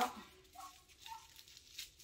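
Two faint, short dog barks from outside, about half a second and a second in.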